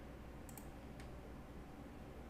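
A few faint clicks of a computer mouse: a quick pair about half a second in, then one more at about a second, over a low steady room hum.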